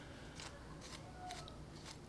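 A quiet pause: faint room tone with a few soft, short clicks and rustles.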